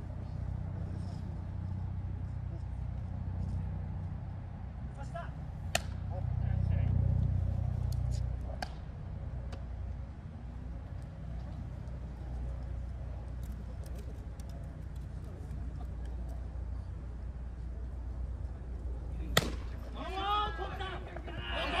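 Low rumble of wind buffeting the microphone outdoors, with a single sharp knock about six seconds in. Near the end comes a loud, sharp crack of a baseball bat hitting the ball.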